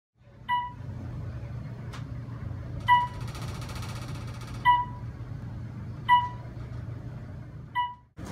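Elevator cab beeps: five short beeps, a second and a half to two and a half seconds apart, as the car passes floors. A steady low hum of the moving cab lies under them.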